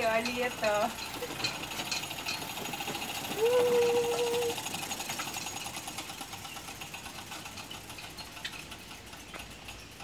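Rapid, even mechanical ticking from the chain and freewheel of a pedal-powered four-wheel surrey bike rolling on paving stones, fading as it moves away.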